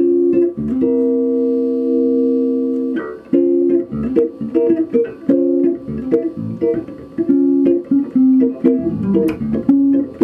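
Six-string Skjold electric bass played through an amp and picked up by a camera microphone in the room. A chord rings for about two seconds, then a run of short plucked chords and notes follows.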